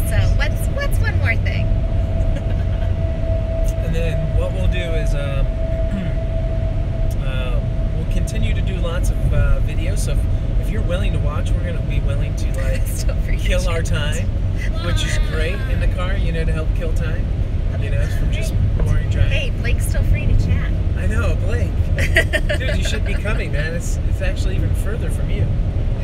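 Steady low road and engine rumble inside the cabin of a moving car, with voices over it.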